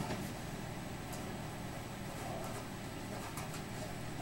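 Quiet room tone: a steady low hum and hiss, with a few faint clicks.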